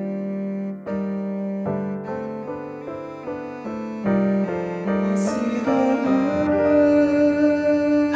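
Cello and piano playing a slow, lyrical passage: a cello melody over flowing piano chords, settling onto a long held cello note from about six seconds in.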